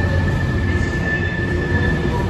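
Freight train of open box wagons rolling past, with a steady low rumble and a continuous high-pitched wheel squeal.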